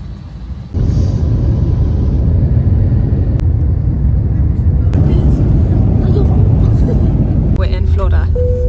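Steady low rumble of a jet airliner heard from inside the cabin, starting suddenly about a second in and holding loud throughout.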